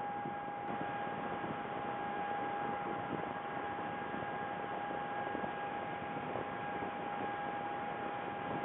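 Steady hiss with a constant high-pitched whining hum running under it, unchanging throughout, the kind of background noise a webcam's audio line carries; no calls or other distinct sounds.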